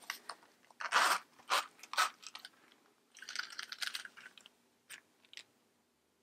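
Metal zipper on a small Louis Vuitton monogram round coin purse being pulled open, a short rasping run of the teeth about three seconds in. Handling rustles and clicks come before and after it.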